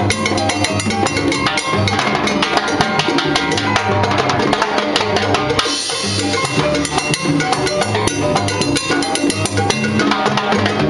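Salsa music with a timbales solo: fast, dense drum strikes over a band with a repeating bass line.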